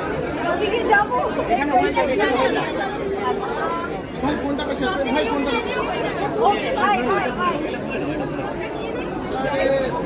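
Many people talking at once: crowd chatter with overlapping voices throughout.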